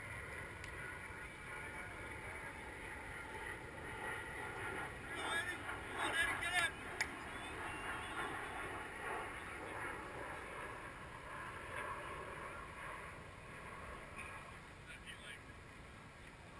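Faint distant voices over a steady outdoor background, with a few short chirping sounds and a sharp tick about five to seven seconds in.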